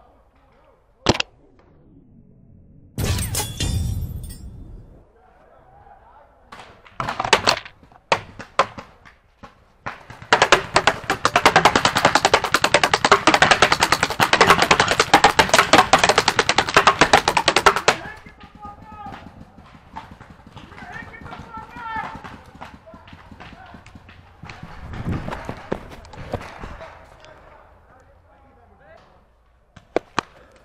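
Paintball markers firing: scattered single shots in the first few seconds, then a long stretch of dense rapid fire from about ten seconds in, lasting roughly eight seconds.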